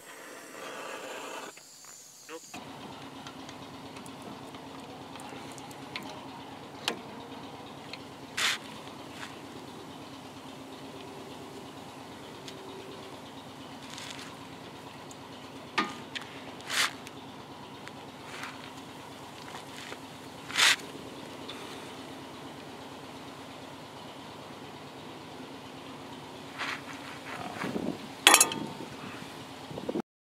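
Hand tools on a steering tie rod end being worked loose: a handful of separate sharp metallic clicks and clanks a few seconds apart, over a steady low hum.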